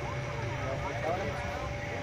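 Busy market ambience: indistinct voices of people talking in the background over a steady low rumble.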